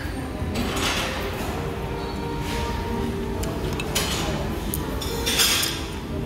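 Restaurant dining-room din: background chatter and faint music, with occasional clinks of dishes and cutlery.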